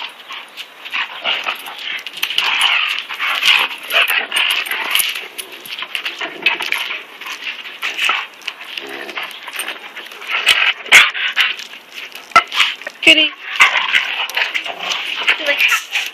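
A German Shepherd and a German Shepherd–Rottweiler mix play fighting, making noisy dog vocalizations in repeated bursts, with a few sharp clicks in the second half.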